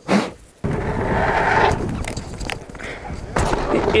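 Mountain bike rolling over a dirt track: a steady rush of tyre and wind noise with a low rumble and a few sharp knocks, starting abruptly under a second in.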